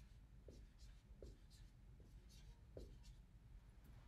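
Faint marker strokes on a whiteboard: a few short scratches about a second apart over quiet room tone.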